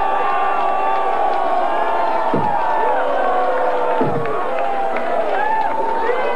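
A crowd yelling and cheering in reaction to a battle-rap punchline. Many voices hold long shouts at once, and a couple of yells slide sharply downward about two and four seconds in.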